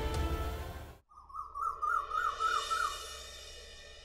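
Background drama score that breaks off sharply about a second in. A warbling, bird-like trill follows over a held music chord, and the sound fades away toward the end.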